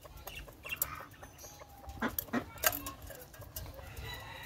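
Caged quail giving short, scattered 'chup' calls, a handful of separate sharp notes over a few seconds, which the keeper puts down to feeding time.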